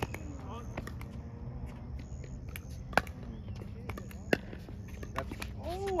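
Pickleball paddles striking a hard plastic ball during a rally: sharp pops at irregular intervals, the loudest about three seconds in and again just over four seconds in, with fainter pops between.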